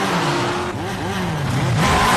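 Several jeeps' engines racing, their pitch falling again and again as they speed past, with a rush of tyre noise near the end.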